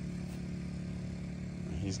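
An engine running steadily at a constant speed, giving an even low hum. A man's voice begins a word at the very end.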